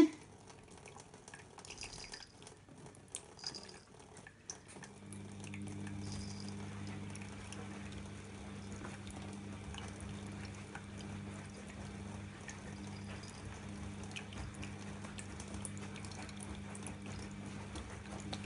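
Thin stream of tap water trickling into a stainless steel sink, with small drips and splashes as a cat licks at the stream. About five seconds in, a low steady hum comes in under the water.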